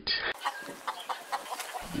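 Domestic chickens clucking, several short clucks over a quiet outdoor background.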